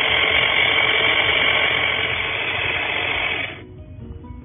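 Toy Kenmore blender running steadily at the press of its power button, then cutting off suddenly about three and a half seconds in.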